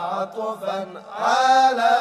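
Arabic devotional chant: a single voice holds long, wavering notes, breaks off briefly near the middle, then takes up a new phrase that swells in.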